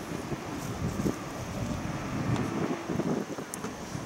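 Wind buffeting the microphone, an uneven low rumble over steady open-air background noise.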